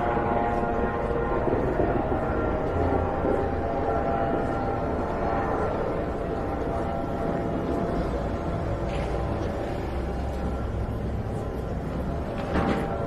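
City street ambience: a steady low rumble with music playing underneath, its sustained notes held without a break.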